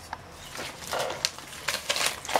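Clothes being handled and shuffled: soft fabric rustling with a few light clicks, loudest about a second in.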